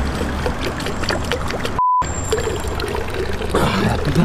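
Thin stream of water running from a stone street fountain's spout as a man drinks from it. About halfway through, all sound drops out for a moment and a short, pure, high beep sounds.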